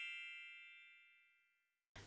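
Bright, bell-like chime with many high ringing tones, fading away over about the first second and leaving silence.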